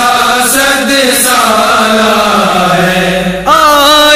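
Layered voices holding a sustained chant as the backing drone of an unaccompanied devotional naat. A solo voice comes in singing, with a wavering pitch, about three and a half seconds in.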